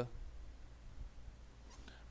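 Faint room tone with a steady low hum.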